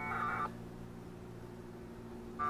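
A short, buzzy burst of packet-radio data tones, about half a second long, at the start of a 2 m Winlink connection. A low steady hum runs underneath.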